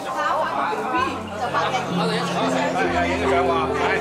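Several people chatting at once in a large room, with music of long, held low notes coming in about a second in and continuing under the talk.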